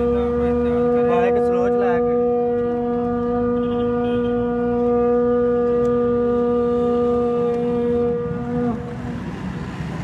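A horn sounding one long, steady held note that cuts off suddenly near the end, with a few voices over it briefly about a second in.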